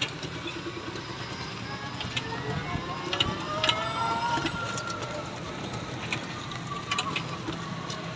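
Steady ride noise from inside a small electric e-bike's curtained cab on a wet, rainy street, with a few light clicks and a faint voice in the background.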